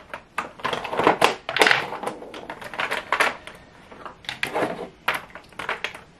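Plastic lip gloss tubes clicking and clattering against each other and a clear acrylic drawer organizer as they are shuffled and rearranged by hand, in a quick, irregular run of clicks.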